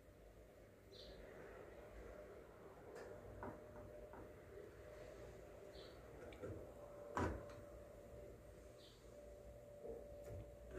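Faint scraping and light tapping of a metal spoon pressing damp flocão (coarse corn flour) flat in a frying pan, with one louder knock of the spoon against the pan about seven seconds in.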